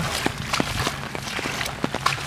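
Footsteps splashing through ankle-deep water in a flooded trench, with rain falling as scattered sharp ticks.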